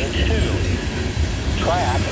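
Loaded coal hopper cars of a freight train rolling past, a steady low rumble, with voices over it.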